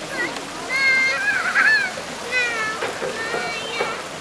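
A young child's high-pitched wordless cries, two of them, about a second in and again past the halfway mark, over the steady rush and splash of river water.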